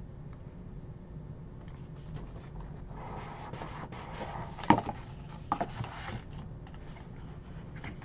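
A cardboard trading-card box is handled and opened: rubbing and scraping of cardboard, with two sharp clicks about halfway through.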